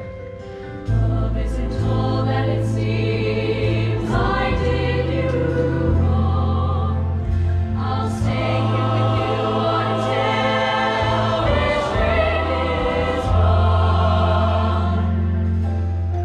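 A mixed show choir singing in harmony over instrumental accompaniment with deep, long-held bass notes. The full ensemble comes in sharply about a second in.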